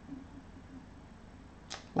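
Quiet room tone, then near the end a short, sharp in-breath just before speech resumes.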